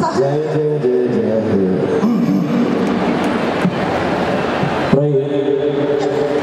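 A man's voice amplified through a microphone and PA system in a large hall, with music underneath.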